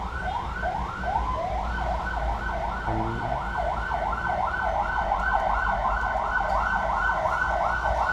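A fast, repeating rising wail, about four sweeps a second, like a siren's yelp. It runs over the low steady hum of the idling car and its air-conditioning blower.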